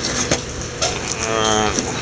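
A few light clicks of metal engine parts being shifted on a workbench, then a man's voice holding a drawn-out sound for about half a second near the end.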